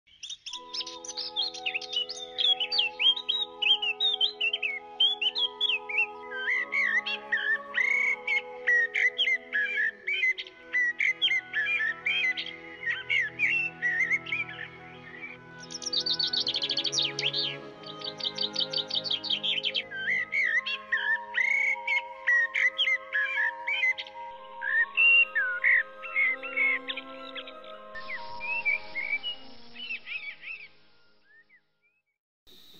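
Birdsong, many bright chirping phrases with a rapid trill about sixteen seconds in, over soft background music of held chords.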